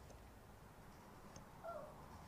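A small dog whining once, briefly and faintly, near the end, against near silence: it is crying to be picked up and held.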